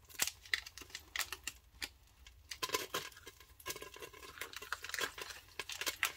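Butter packaging crinkling and clicking as it is opened and handled, a run of irregular small crackles and clicks.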